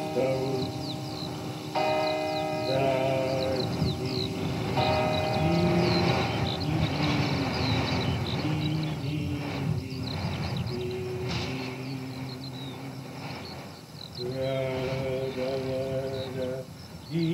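Church bells ringing, a few strikes that each hang on for a second or two: at the start, about two seconds in, about five seconds in, and again near the end. Underneath runs a steady background of high chirps and low distant voices.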